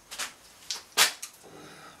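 Three short knocks and scrapes of a wooden log being shifted by hand on a metal bandsaw table; the third, about a second in, is the loudest.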